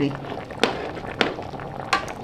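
A perforated metal skimmer spoon clicking against a large metal pot three times as rice and mutton are stirred slowly through hot broth, over a faint liquid hiss.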